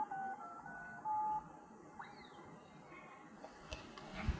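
Little Tikes Discover Sounds toy phone sounding a quick run of touch-tone dialing beeps as its buttons are pressed, about four short beeps in the first second and a half, followed by a faint short chirp about two seconds in.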